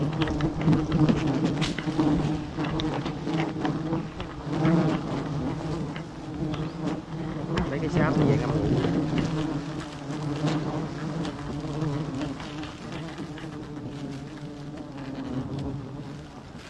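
A cloud of honeybees buzzing steadily right at the microphone around an exposed wild comb as it is cut open. Scattered clicks and rustles come from the knife and the handling of comb and palm fronds. The buzz eases off slightly near the end.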